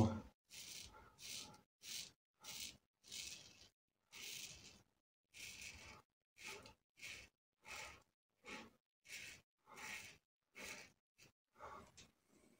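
Double-edge safety razor (Soluna aluminium razor with a Wilkinson Sword blade) scraping through lathered stubble against the grain. The strokes are short, faint and separate, about sixteen of them at roughly one and a half a second.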